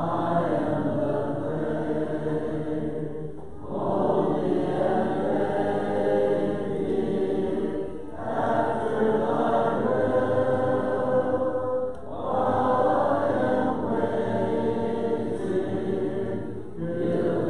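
A church congregation singing a hymn together a cappella, without instruments. The singing runs in long held phrases of about four seconds each, with a brief breath between phrases.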